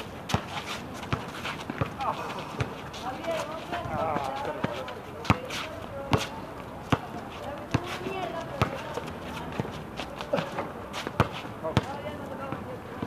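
A basketball bouncing on a hard outdoor court, sharp bounces at irregular intervals, about one a second, under the voices of players and onlookers.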